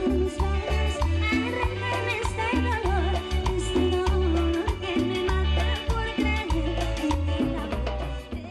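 Upbeat Latin tropical dance music from a band, with a repeating deep bass line, percussion and keyboards, and a lead voice singing from about a second and a half in.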